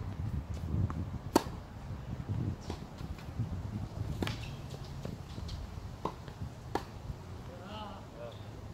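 Tennis ball struck by racket strings and bouncing on a hard court during a rally: a series of sharp pops a second or so apart, the loudest about a second and a half in.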